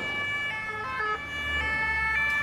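Several French two-tone emergency-vehicle sirens sounding together. Each steps between its two pitches, each tone lasting about half a second, and the sirens are out of step with one another, over a low rumble.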